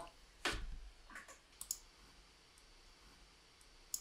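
A few faint computer-mouse clicks: the loudest about half a second in, two weaker ones soon after, and a single sharp click near the end.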